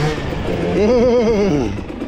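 A man laughing briefly about a second in, a wavering run of voiced pulses, over the steady low running of a dirt bike engine.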